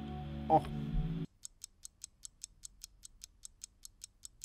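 A held chord from a dark pop sample preview that cuts off abruptly about a second in, followed by a clock-ticking sound effect, about six or seven light ticks a second, marking time passing.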